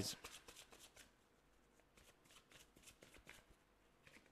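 A deck of oracle cards being shuffled by hand, faint: a quick run of soft card flicks in the first second, then scattered quieter ones.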